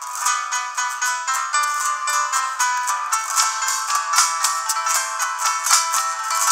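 Live instrumental music led by an acoustic guitar playing quick plucked notes, with no singing. The sound is thin and bright, with no bass.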